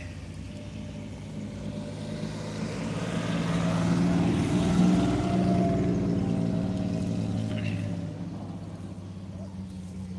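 Old military truck's engine driving past on a dirt track, growing louder to a peak about halfway through, then fading with a slight drop in pitch as it moves away.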